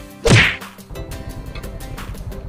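A single whip-like swish sound effect, sweeping quickly down from high to low about a quarter second in, just as the music cuts off. It is followed by a low, steady background rumble.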